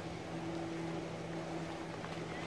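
Steady low drone of a boat engine running at an even speed across the water.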